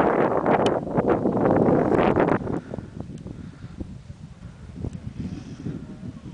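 Wind buffeting the camera's microphone, a loud rushing noise that drops suddenly to a low rumble about two and a half seconds in.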